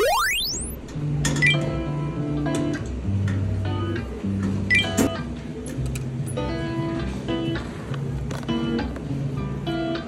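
Background music of short repeated notes over a steady bass line, opening with a quick rising sweep effect.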